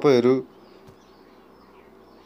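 A man says one short word, then a faint steady low buzz hangs in the background.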